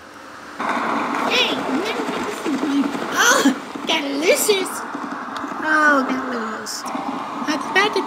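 Indistinct voice sounds without clear words, several short calls that bend sharply in pitch, over a steady hiss that starts about half a second in and fades near the end.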